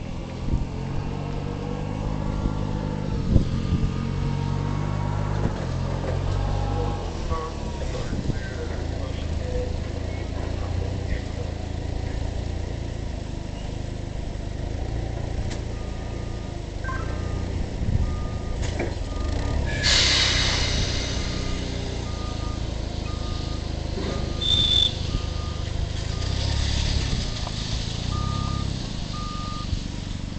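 A low engine rumble runs throughout. From about halfway through, an electronic reversing beeper sounds steadily, about once a second. A short burst of hiss comes about two thirds of the way in.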